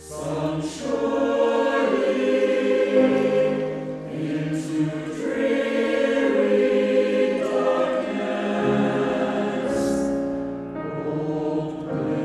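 Mixed choir of men's and women's voices singing a slow piece in sustained chords, with a few sharp 's' consonants cutting through.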